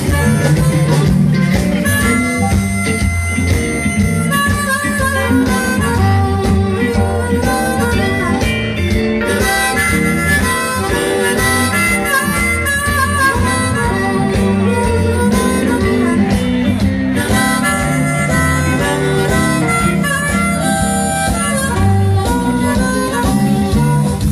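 Live blues band playing, a harmonica carrying the lead with held and bending notes over amplified guitars and a steady bass line.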